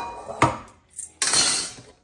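Metal tongs clinking and scraping against a metal pan and a plastic blender cup as wilted leaves are scooped in. There are two sharp knocks near the start, then a longer scraping clatter just past the middle.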